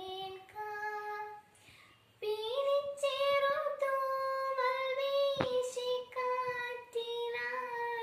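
A young woman singing solo and unaccompanied, in long held, gently wavering notes. After a short breath about a second and a half in, she comes back on a higher note, louder, and holds it.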